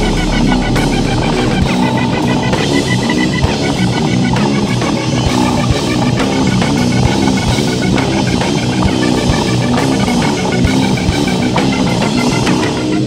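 A live rock band plays loudly: electric guitar, drum kit and keyboard together, with steady drum hits. A deep low note is held for the first second or two.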